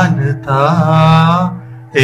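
A man's voice singing long held vowel notes into a microphone, through a digital mixer whose reverb send on that channel is being raised. There are two phrases, the second with a wavering, bending pitch, and a short gap near the end.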